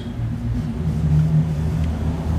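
A low, steady rumble, with a hum that sets in under a second in.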